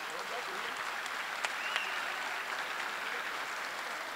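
Audience applauding steadily, a moderate, even clapping in the room.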